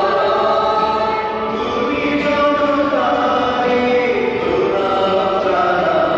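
Choir singing a slow hymn in long held notes that step from pitch to pitch.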